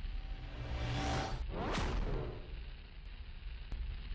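Intro sound effects: a low, steady fire-like rumble with a rising whoosh about a second in and a second, sharper whoosh just before the two-second mark, then two faint ticks near the end.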